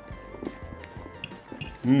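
Quiet background music with a few light clinks of cutlery against dishes as people start eating.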